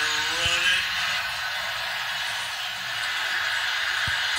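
Audio of a football video clip playing from a smartphone's small speaker: a steady noisy rush, with a brief bit of voice in the first second and a dull thump about half a second in.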